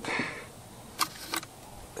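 Two short, sharp clicks about a third of a second apart: a small flathead screwdriver against the plastic tank housing of a Stihl 036 chainsaw as a rubber fuel line is worked into its hole.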